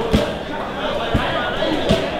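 Indistinct background voices in a busy training gym, with three short, sharp knocks spread across the two seconds.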